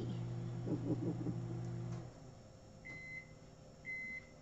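A steady electric appliance hum that cuts off about halfway through, followed by short high electronic beeps, one a second, twice.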